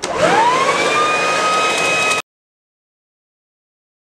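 Electric WORX TriVac 3000W leaf blower-vac switched on in vacuum mode: its motor whine rises quickly in pitch as it spins up, then runs steadily over a rush of air. The sound cuts off suddenly a little over two seconds in.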